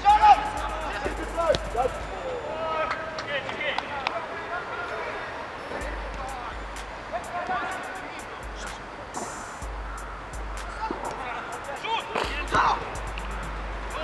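Amateur football match ambience: distant shouting from players, with scattered short sharp knocks and a low rumble that comes and goes.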